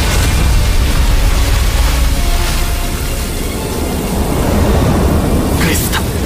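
Animated action sound effects of lightning over a rushing torrent: a loud, deep continuous rumble under a rushing hiss, with a sharp crackle near the end.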